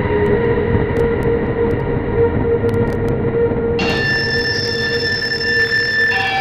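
Loud, steady, high-pitched squeal of several held tones over a rumbling noise, like a train's wheels squealing on the rails; about four seconds in, a brighter, higher set of tones joins.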